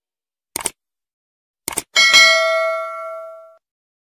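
Subscribe-button animation sound effect: two short mouse-style clicks about a second apart, then a bright bell ding, the loudest sound, ringing out for about a second and a half.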